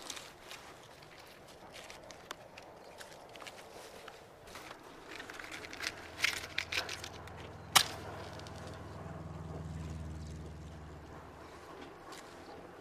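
Quiet rustling and small handling noises, then a few short scrapes and one sharp click a little before eight seconds in as a cigarette is lit. A low hum swells underneath through the second half and fades near the end.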